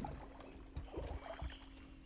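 Faint splashes of a small boat being paddled through calm water, with a few soft knocks.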